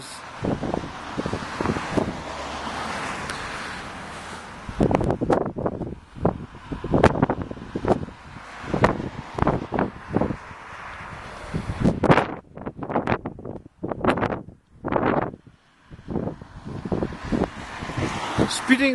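A car passes on the road over the first few seconds. Then gusty wind buffets the microphone in repeated, irregular bursts.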